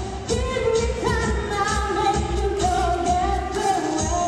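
A pop-style song sung into a handheld microphone over an amplified backing track with a steady beat.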